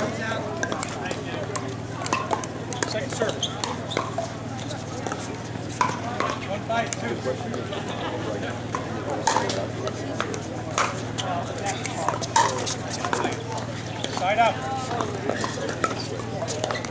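A pickleball rally: sharp, irregularly spaced pops of paddles striking the hard plastic ball, over murmuring voices and a steady low hum.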